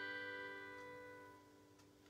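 The last held chord of a keyboard accompaniment to a sung psalm setting, fading out.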